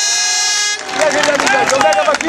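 A horn blast, one steady tone held for several seconds, cuts off suddenly under a second in. Voices follow.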